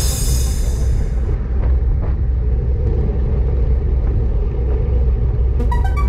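Steady wind rumble and road noise on a camera riding a road bike at speed. The backing music fades out at the start and electronic music comes back in near the end.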